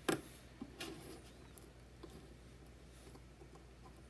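Small plastic clicks and light handling noise from JST wire connectors being plugged into L298N motor-driver boards. There is a sharp click at the very start and a fainter one about a second in.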